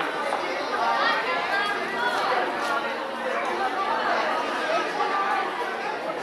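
Many people talking at once: the steady, overlapping chatter of a party crowd in a large hall.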